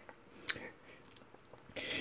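Plastic model-kit parts handled and pushed together: one sharp click about half a second in, then a few faint ticks.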